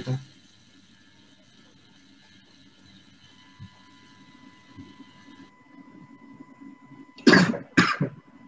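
A man coughs twice in quick succession near the end, after several seconds of quiet room tone.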